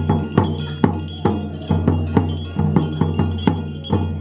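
Ringing ritual metal percussion, gong- and bell-like, struck about three times a second in an uneven rhythm, each stroke ringing on under the next with a steady low hum beneath.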